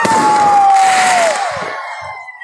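Fireworks going off close by: a loud burst of noise with a whistle that falls slowly in pitch, dying away about a second and a half in.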